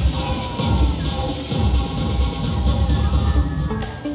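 Song with a singing voice over a heavy bass beat, the soundtrack of a musical fountain and laser show. The music thins out near the end.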